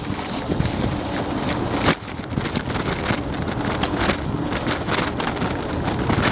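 Bicycle ride noise: wind on the microphone over the hum of rolling tyres, with frequent short clicks and rattles from the bike and camera mount.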